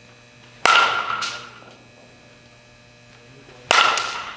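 Softball bat striking the ball twice, about three seconds apart: each hit a sharp crack with a short ringing ping that dies away. A softer knock follows about half a second after the first hit.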